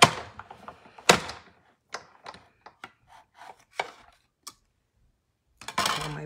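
Clear plastic cutting plates of a die-cutting machine knocking and clacking as they are handled against the machine. There are two sharp knocks about a second apart, then several lighter taps, then a pause.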